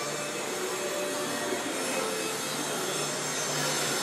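Steady rushing background noise with a faint low hum running through it.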